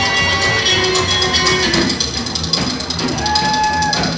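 Live band music with a drum kit and an upright double bass keeping a steady beat, and a single high note held for under a second near the end.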